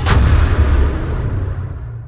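Cinematic trailer boom: one sharp hit right at the start, followed by a loud, deep rumble that slowly dies away.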